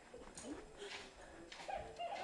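Small dog whimpering faintly, a few short whines, one rising and one held near the end, with soft footsteps on a hardwood floor.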